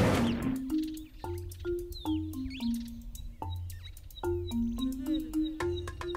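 Background music: a simple melody of short notes stepping up and down over a low bass note that comes in about once a second.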